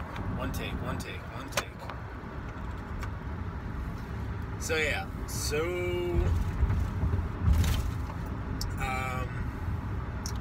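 Steady low road and engine rumble inside a moving car's cabin. It is joined by a few sharp clicks in the first three seconds as the recording phone is handled, and short vocal sounds from a man about five and nine seconds in.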